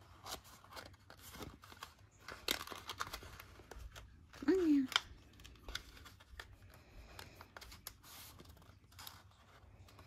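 Paper rustling and crinkling as hands fold and press a small paper basket together, with scattered crisp clicks and scrapes. There is a short hum from a voice about four and a half seconds in.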